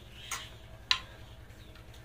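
Two clinks of spoons being set down on plates, about half a second apart, the second sharper and louder.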